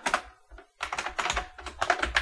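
Typing on a computer keyboard: a few keystrokes, a short pause about half a second in, then a quick run of keystrokes.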